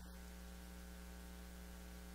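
Faint steady electrical mains hum with a buzz of evenly spaced overtones and a light hiss: noise from the recording chain.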